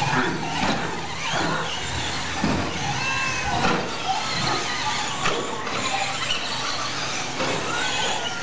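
1/10-scale 2WD short course RC trucks racing, their electric motors whining in high pitches that rise and fall with the throttle, with a few short knocks over the running noise.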